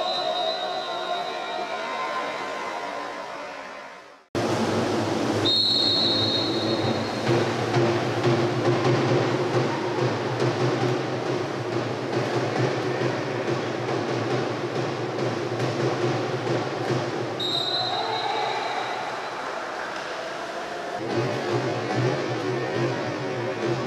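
Two short blasts of a referee's whistle, about five seconds in and again about seventeen seconds in, over the steady din of splashing and an echoing pool hall. The sound cuts out abruptly a little after four seconds in and resumes.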